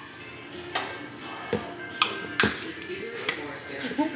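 Background music over a few sharp clicks and knocks, among them a dropped can of sparkling water being opened slowly; it does not burst or spray.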